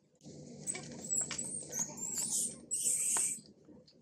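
Macaques screaming in high, wavering squeals during a scuffle between a mother and a juvenile, loudest a little before the end and stopping about half a second before it.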